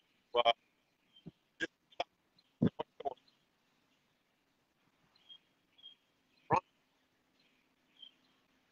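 A man's voice breaking up into short clipped fragments with dead silence between them: the audio of a live video call dropping out over a weak connection.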